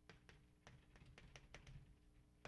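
Chalk writing on a blackboard: faint, irregular short taps, several a second, as the chalk strikes the board.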